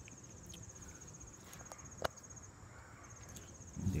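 Cricket trilling steadily in a high, fine pulsed tone, breaking off briefly past the middle. A single sharp click comes about two seconds in.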